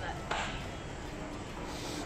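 Low, steady background noise of an underground metro station, with a short hiss about a third of a second in.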